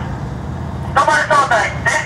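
Low, steady rumble of idling tank diesel engines from a Japanese Type 90 and a Type 74 tank. A voice starts speaking over it about a second in.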